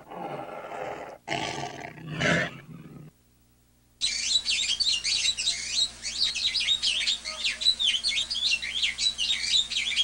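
Animal sound effects: growling roars for about three seconds, then, after a second of silence, a dense chorus of quick, high bird chirps.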